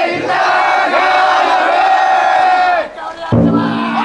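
Many men carrying a festival float shout one long, drawn-out call together. Near the end a deep taiko drum strikes and rings.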